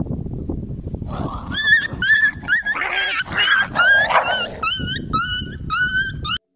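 Puppy yelping repeatedly while tussling with a larger dog: short high yelps, each rising in pitch, about two or three a second from about a second in, over a low rumble.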